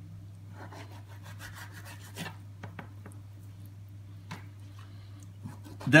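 Chef's knife scraping along salmon skin on a plastic cutting board as the fillet is cut free of its skin, with a few light ticks of the blade against the board.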